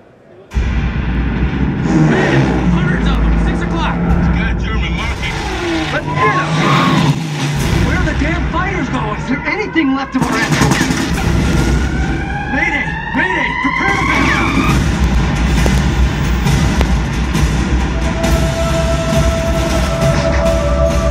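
A war film's 5.1 surround soundtrack played back through a spatial-audio headphone plug-in: voices over music and effects. Rising tones come in about twelve seconds in, and a steady tone holds near the end.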